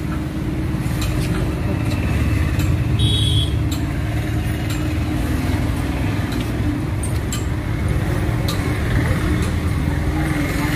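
Road traffic rumbling steadily with an engine hum underneath, a few light clicks, and a brief high-pitched tone about three seconds in.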